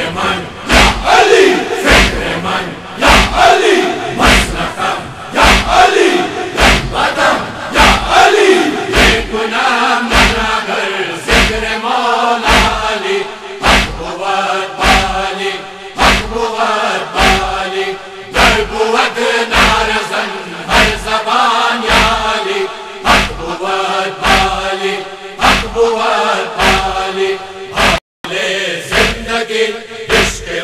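Group of men chanting a Persian noha in unison, each line marked by open-hand chest-beating (matam) at about three thumps every two seconds. The sound drops out briefly near the end.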